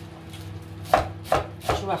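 A quick run of sharp knocks, about three a second, starting about a second in after a quieter stretch, over a steady low hum.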